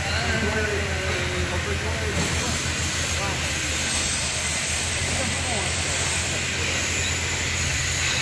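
Steady industrial noise of a ship being fitted out: a constant low hum under a loud hiss, with faint distant voices. The hiss grows brighter about two seconds in.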